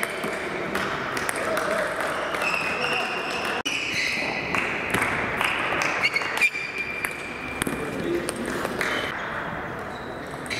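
Table tennis ball clicking back and forth off the rackets and the table in a rally, a sharp click every second or so, with voices talking in the background.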